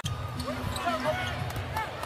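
Basketball game sound on an arena hardwood court: a ball being dribbled and sneakers squeaking as players run up the floor, over crowd rumble.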